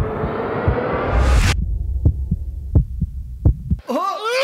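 Suspense sound effects: a rising noise swell over low thumping that cuts off suddenly about a second and a half in, then a heartbeat effect alone, three double beats.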